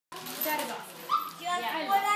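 Several voices chattering at once, children among them, with a short high yelp about a second in.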